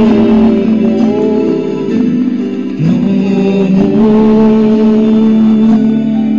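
Music: a prayer sung in slow, chant-like style, the voice holding long notes, with a new note sliding up about three seconds in.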